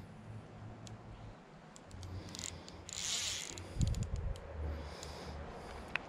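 Large-arbor fly reel's drag clicking in irregular spurts as a hooked fish pulls line off, with a short hiss about three seconds in and a low rumble of wind or handling underneath.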